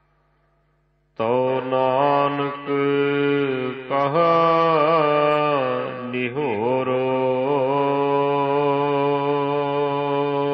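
Gurbani kirtan: a voice singing a line of the shabad in long held, melismatic notes that bend in pitch, over a steady drone. The singing enters about a second in after a brief near-silent pause.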